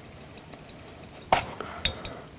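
Two sharp clicks about half a second apart, made by hands working a thread bobbin against the hook and vise while starting thread for fly tying.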